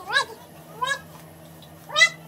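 Three short, high-pitched vocal calls, each rising and then falling in pitch, spaced a little under a second apart.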